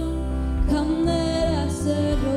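Live worship band: girls' voices singing together into microphones in a slow song with long held notes, accompanied by guitar and bass guitar.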